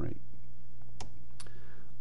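Two sharp computer clicks, about a second in and again less than half a second later, over a steady low electrical hum; the clicks advance the presentation to the next slide.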